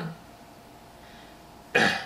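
A man's single short cough near the end.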